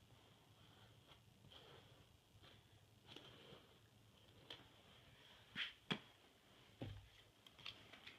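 Near silence: faint room tone with a few soft, brief ticks and scrapes, the clearest a little past the middle.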